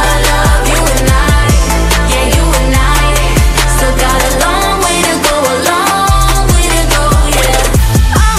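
Pop song playing: a female vocal group singing over a steady beat with deep bass.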